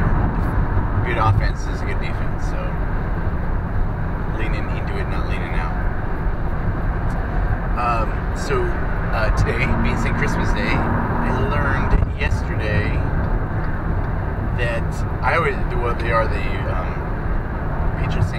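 Steady low road and engine rumble inside a moving car's cabin, with faint, indistinct voice sounds at times.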